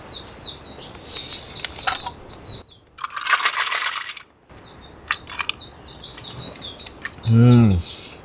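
A songbird singing repeated quick runs of high chirps, broken about three seconds in by a short burst of crackling noise. Near the end a man gives a short low hum.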